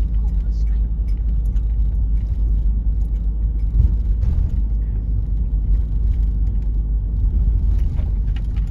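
Steady low rumble of engine and tyre noise inside a car's cabin as it is driven slowly along a road, with a light bump about four seconds in.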